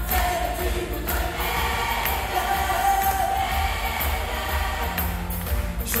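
Large choir singing over a live band, with sustained sung notes and a steady, heavy bass beat, as heard from the audience in a big hall.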